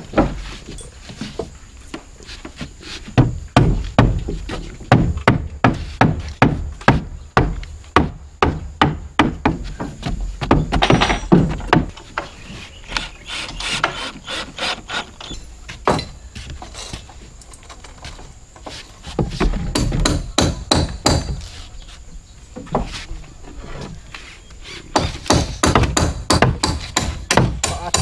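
Hammer striking wooden railing timber in bursts of rapid knocks, with short pauses between the bursts.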